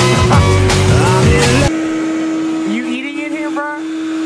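Vacuum cleaner motor running with a steady hum, under background music that stops abruptly a little under halfway through; a brief voice sound near the end.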